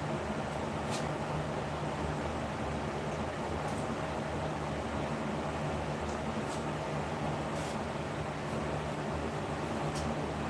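Steady running hum and rushing noise of grow-room equipment, with a few faint ticks.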